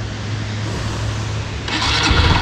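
Yamaha Libero 125's single-cylinder engine running at idle, a steady low hum with a rough, rasping mechanical rattle. A short rustling burst comes near the end.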